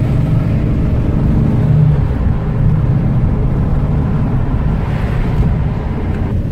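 Chevrolet Corvair's air-cooled, rear-mounted flat-six engine running under way, heard from inside the cabin together with road noise. The engine swells a little over the first two seconds, then eases and runs on steadily.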